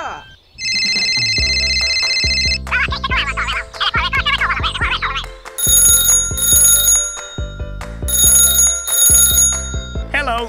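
A telephone ringtone sound effect, high and trilling, rings twice over cheerful background music. Before it, a steady electronic beep lasting about two seconds and a stretch of high chattering.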